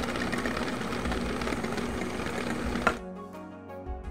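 Electric hand mixer running at a steady speed, its beaters churning batter in a glass bowl as flour goes in. It stops suddenly with a click near the end.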